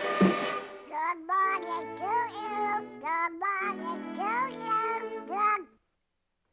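Cartoon duckling's quacking, squawky chatter: a string of short rising and falling calls over orchestral background music, opening with a sudden loud burst of sound.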